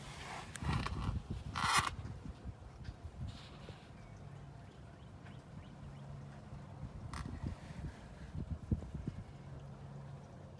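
Faint scrapes and knocks of hands handling parts under the ATV, the loudest a short scrape near the start, over a low steady hum.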